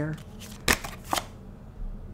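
Tarot cards being handled as a card is drawn from the deck, with two sharp card snaps about half a second apart near the middle and a few lighter ticks.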